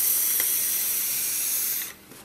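A person taking a hit from an electronic cigarette: one long, steady, airy hiss that stops suddenly just before the end.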